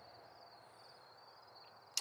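Faint, steady high-pitched trilling of insects in the background, with one short sharp click near the end.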